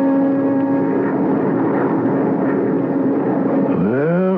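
Small jet airplane in flight, a steady rushing engine drone with a low hum.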